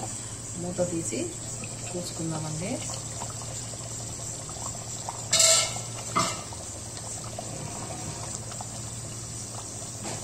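Thick tomato-and-butter curry gravy simmering in a nonstick pan, bubbling faintly over a steady low hum. About five seconds in, a steel pan lid is lifted off with a brief metallic clatter, and a short knock follows.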